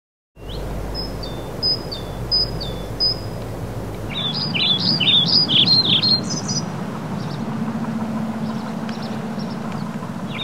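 Birds singing in the open: four short, evenly spaced high whistled calls, each stepping down in pitch, then a fast warbling song from about four seconds in. A low steady tone comes in under it near the end.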